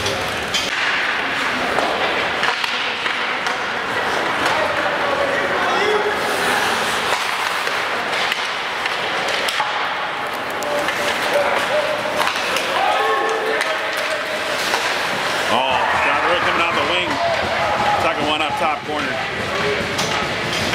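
Ice hockey play in an echoing arena: voices of spectators and players calling out, with sharp clacks and thuds of sticks, puck and bodies against the boards.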